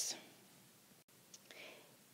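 The end of a spoken word trailing off, then near silence: quiet room tone, which cuts out for an instant about halfway, with a faint short breath-like sound a little later.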